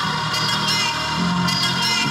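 Electronic dance music from a DJ mix over the club sound system, with sustained chords over a shifting bass line.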